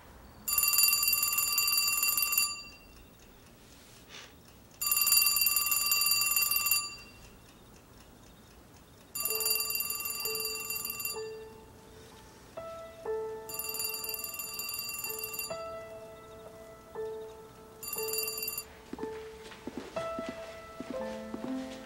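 A corded trimline telephone rings in trilling bursts of about two seconds, about four seconds apart. There are five rings, and the last is cut short. Soft background music with sustained notes comes in about nine seconds in, under the rings.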